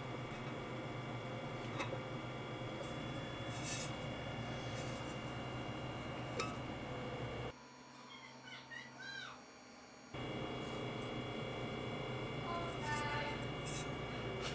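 Steady electrical hum with a few small clicks and taps as a plastic rotary chuck is fitted and adjusted on a metal tumbler by hand. In the middle the hum cuts out for a couple of seconds, leaving a few short chirps.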